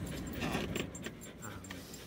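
Faint light jingling of small metal pieces inside a moving car's cabin, over the car's low steady rumble.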